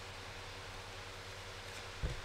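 Steady, low-level background hiss with a faint low hum: room tone and recording noise, with no distinct event.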